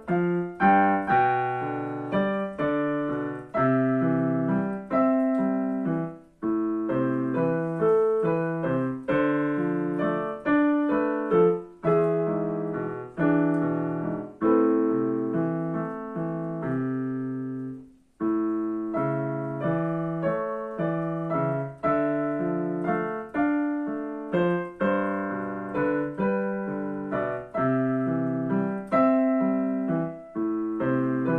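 Digital piano played with both hands: a melody over chords, note after note without let-up apart from one short break about two-thirds of the way through.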